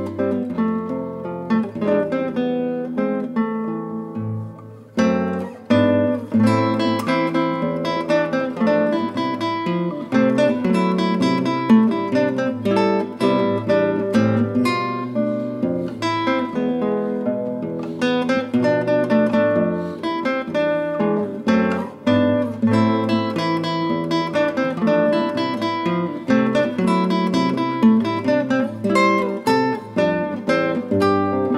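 Solo nylon-string classical guitar played fingerstyle, a slow melodic piece of plucked notes and chords. The notes die away briefly about four seconds in, then the playing resumes.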